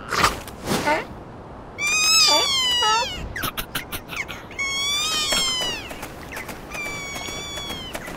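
Wordless, squeaky cartoon seal vocalizations: three high whining calls, the first bending down and breaking in pitch, the last held fairly level. A few short taps come between them.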